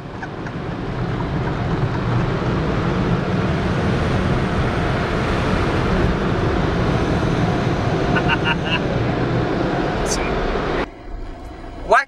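Automatic car wash air-dryer blowers running, heard from inside the car: a loud, even rush of air that builds over the first couple of seconds, holds steady, and cuts off suddenly near the end.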